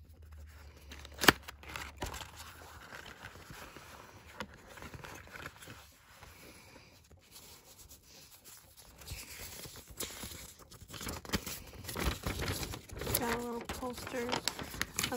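Cardboard album packaging and a folded paper insert being handled: a sharp snap about a second in, then soft rustling, turning into busier crinkling of paper as the insert is unfolded near the end.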